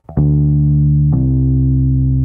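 Electric bass guitar: one plucked note, then about a second in a pull-off drops it to a lower note on the same string without a second pluck, and the lower note rings on.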